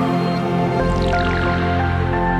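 Intro music with sustained held chords. About a second in, a quick cascade of falling high tones plays over them.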